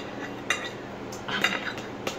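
Metal fork clinking against a plate and the glass tabletop: one clink about half a second in and a few more close together around a second and a half.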